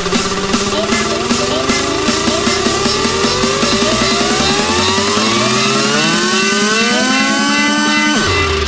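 Electronic dance music build-up: a synth riser climbs steadily in pitch over a fast drum roll, levelling off about three-quarters of the way through. The bass drops out in the last couple of seconds.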